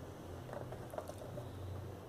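Quiet room tone with a steady low hum and a few faint handling noises as a cardboard box is moved in the hands.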